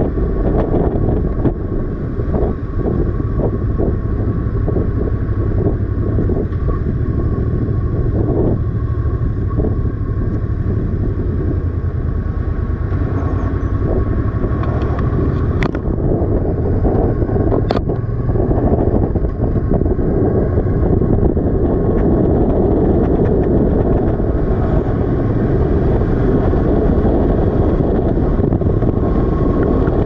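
Motorcycle riding along, its engine running under a steady rush of wind over a helmet-mounted microphone. There are two sharp clicks near the middle, and the sound grows slightly louder in the second half.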